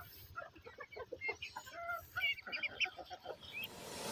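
A flock of hens clucking in short, quick calls, mixed with higher short peeping calls from young birds, faint and scattered.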